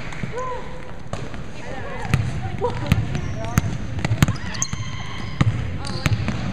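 A basketball bounced on a hardwood gym floor, about half a dozen sharp, irregular bounces roughly a second apart, with players' voices and court noise behind.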